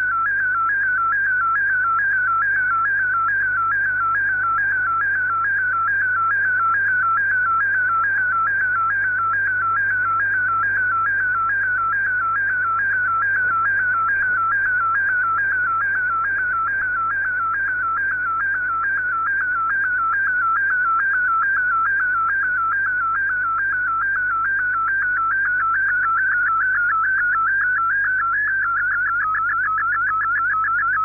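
An MFSK digital picture transmission from the Shortwave Radiogram broadcast, received on 9400 kHz. It is a single whistling tone that wavers up and down in quick, regular sweeps as a colour image is sent line by line, and the sweep pattern changes near the end. Faint receiver hum and hiss sit beneath it.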